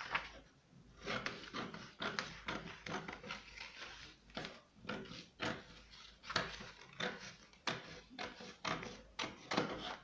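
Scissors cutting through a paper pattern, a steady run of snips about two a second.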